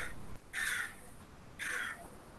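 A crow cawing three times, about a second apart.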